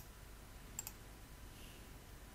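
Two computer mouse clicks, each a quick press-and-release pair. One comes right at the start and one just under a second in, over faint steady hiss.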